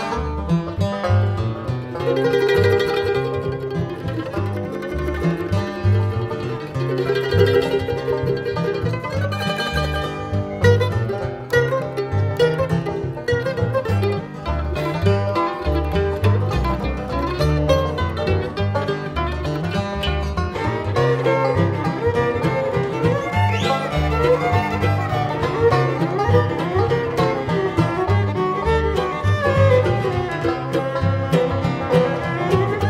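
Bluegrass string band playing an instrumental break: banjo, fiddle and mandolin trading fast picked and bowed lines over acoustic guitar and upright bass, with no singing. A quick upward slide, likely from the fiddle, comes about two-thirds of the way through.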